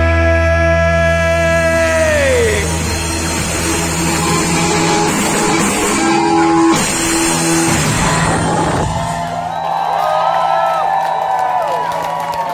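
A rock band ends a song live: a loud held chord sinks in pitch about two seconds in and dissolves into a noisy wash of guitars and cymbals. From about nine seconds in, the crowd shouts and cheers.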